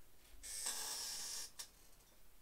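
One long breath into a close microphone, about a second long and airy, with no voice in it. A short faint click follows.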